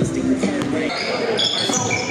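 Basketball game play in a gym: a ball bouncing on the hardwood floor, with sneakers squeaking in short high-pitched chirps from a little over a second in. The gym's echo carries the sound.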